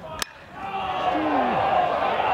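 One sharp crack of a metal college baseball bat meeting the pitch, then a crowd swelling into cheers and shouts as the ball carries deep toward the left-field wall for a home run.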